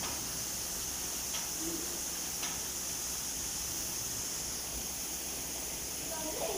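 A steady, even hiss with no distinct events, and two faint clicks about one and a half and two and a half seconds in.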